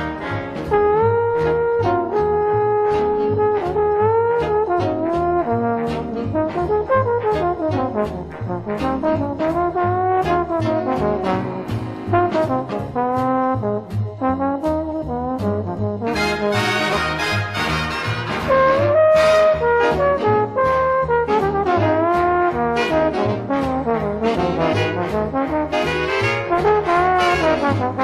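Big-band jazz recording: a lead trombone plays the melody over the orchestra's brass, saxophones and rhythm section. About halfway through, the band comes in brighter and fuller.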